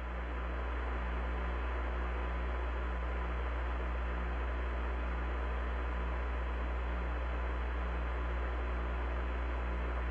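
Steady radio-channel static and hiss over a strong deep hum, with a thin steady whistle tone and a faint low tone pulsing on and off about once a second. It swells up slightly in the first second.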